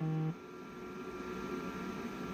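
A man's closed-mouth hummed "mm-hmm" ends in the first moment, followed by faint, steady electrical hum and hiss in the recording.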